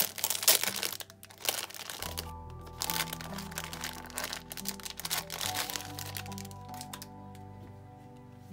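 Clear plastic packaging bag crinkling and crackling as it is handled and opened, busiest in the first half and thinning out later. Soft background music with long held notes comes in about two seconds in.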